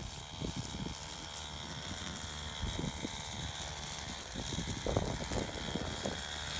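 Harness-slung petrol weed eater (brushcutter) running steadily at high revs while mowing weeds in the vineyard row, with a few brief louder moments.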